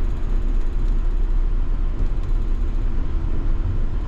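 Cabin noise inside a moving minibus: engine and road noise as a steady low rumble.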